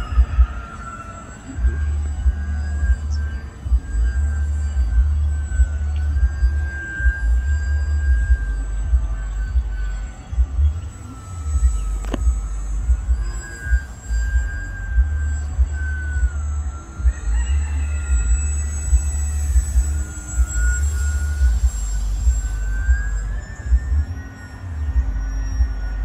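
Radio-controlled model Fokker triplane's motor and propeller whining overhead, the pitch rising and falling as it throttles and passes, with wind buffeting the microphone. A single sharp click about halfway.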